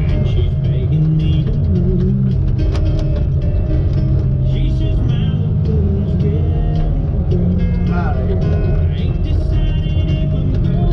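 Country song playing: a man singing over a full band.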